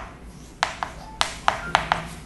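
Chalk tapping against a blackboard as figures are written: a run of about six sharp taps in the second half.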